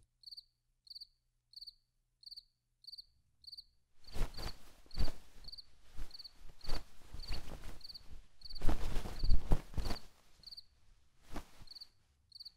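A cricket chirping steadily, about one and a half chirps a second. From about four seconds in, cloth rustling in irregular bursts as bedding is spread and smoothed over a bed.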